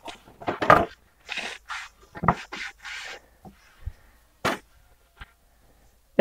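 Handling noises of a sanded wooden oar being laid down across a wooden sawhorse: light rustles and small clicks, then one sharp wooden knock about four and a half seconds in.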